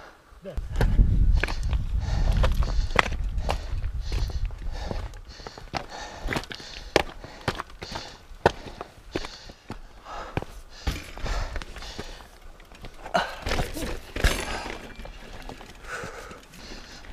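Footsteps on loose rock and the clatter of a carried mountain bike during a hike-a-bike climb, with many irregular sharp knocks. A low rumble fills the first few seconds.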